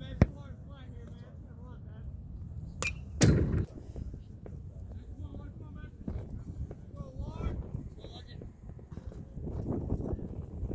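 A few sharp knocks, the loudest about three seconds in, over steady low outdoor rumble and faint background chatter.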